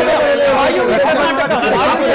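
Several men talking over one another at once in a heated studio debate: overlapping speech only.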